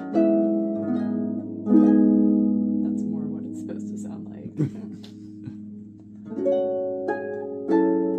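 Lyon & Healy pedal harp, built around 1893, played by hand: chords and single notes are plucked and left ringing. Playing drops away for a few seconds near the middle and then picks up again.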